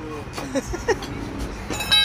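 A low, steady vehicle rumble, with a brief shrill tone near the end.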